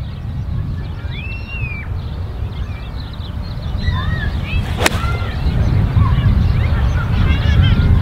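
A four iron striking a golf ball off the fairway: one sharp crack about five seconds in. Steady wind noise on the microphone runs underneath.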